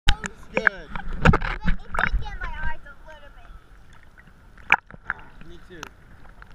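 A girl's excited high-pitched cries and yelps in quick succession over splashing surf during the first half, then the water sloshing more quietly, broken by a single sharp knock a little before the end.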